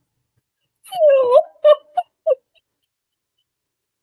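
A short wordless vocal sound from a person: one long note that dips and then rises in pitch, followed by three brief shorter sounds.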